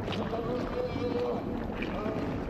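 Halloween horror sound-effects montage: a drawn-out, wavering eerie tone over a steady low rumble.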